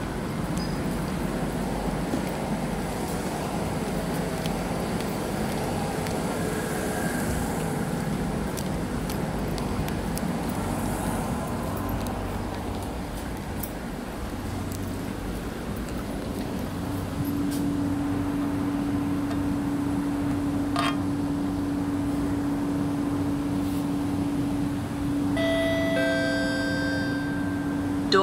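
Interior noise of a Kawasaki–CRRC Sifang C151B metro car. A steady hum comes in about two-thirds of the way through. Near the end a door-closing chime of a few steady tones sounds.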